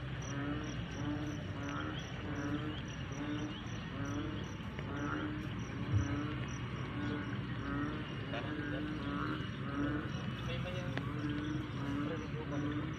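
A chorus of frogs calling in repeated low croaks, about two or three a second, with a faster high-pitched chirping running over them.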